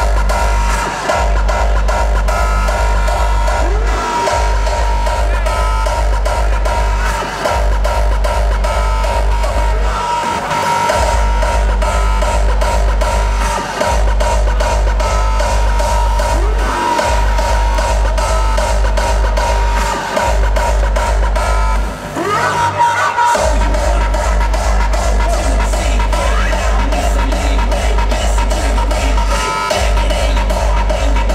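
Hardstyle dance music played loud over a venue sound system. A heavy kick drum runs under repeating synth riffs and drops out briefly about every three seconds. Around two-thirds of the way through there is a longer break with a rising sweep before the kick comes back in.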